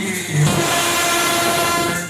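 Street brass band of trumpets and other brass playing loudly, holding notes over a dense, noisy wash of sound.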